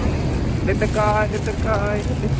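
Steady low outdoor rumble, with brief faint voices of people nearby about a second in and again near the end.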